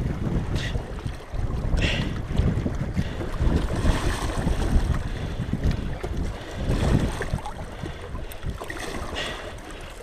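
Wind buffeting the microphone in an uneven low rumble, with a few brief scraping sounds as pliers work a hook out of a channel catfish's mouth.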